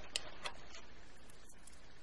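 A few faint, light clicks of a small metal chain and jewelry findings being handled, the clearest two in the first half second.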